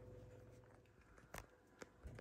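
Near silence: room tone, with two faint clicks in the second half.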